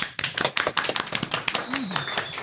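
A few people clapping by hand in a small room: a quick run of irregular claps.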